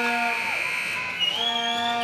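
A horn sounding in held blasts at the hockey rink: one blast cuts off about half a second in and another starts about a second in and is still going at the end. Faint crowd voices are mixed in underneath.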